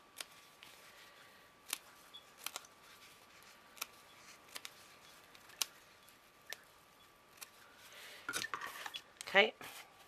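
Small craft scissors snipping off excess bits around the inner edge of a packing-foam ring, single sharp snips about a second apart. Near the end there is handling noise and a short burst of voice, the loudest sound.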